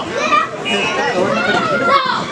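Many overlapping voices, children's among them, chattering and calling out at once in a large room.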